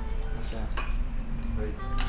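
Ice cubes clinking against glass as they are dropped by hand from a glass bowl into a tall glass: two sharp clinks, one about three-quarters of a second in and one near the end.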